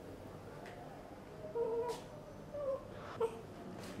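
Newborn baby giving a few faint, short whimpers: one about a second and a half in and two briefer ones near the end.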